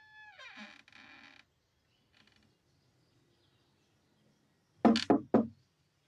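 A guitar-led music cue dies away in the first second and a half. Near the end come three quick, loud knocks on a wooden door.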